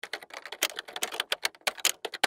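Typewriter typing sound effect: a rapid, irregular run of key clacks that starts suddenly.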